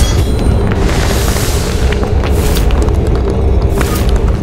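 Deep, loud booming rumble, a sound effect for a weapon striking the ground and cracking it, with whooshing swells about a second in and again near the end, under dramatic background music.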